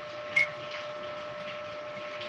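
A metal spoon taps once against a ceramic mug, a short clink with a brief ring, over a faint steady hum.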